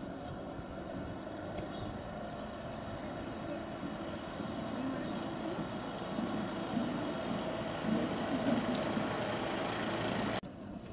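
Road traffic noise, slowly growing louder, with a few louder swells near the end.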